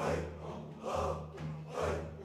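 A group of men chanting a zikr in unison, with a forceful, breathy syllable pushed out about once a second over a low held chanted tone.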